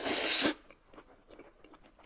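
A loud slurp of noodles lasting about half a second, followed by quieter chewing sounds.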